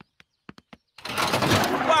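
Cartoon sound effect of rummaging and clattering in the back of a van, as a tall grandfather clock is pulled out. It is a dense noisy clatter lasting about a second, starting halfway in after a few faint clicks.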